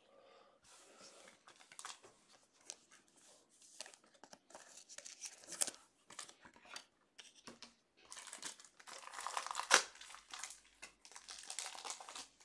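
Foil trading-card pack wrappers being torn open and crinkled, coming as faint scattered crackles that grow busier in the last few seconds.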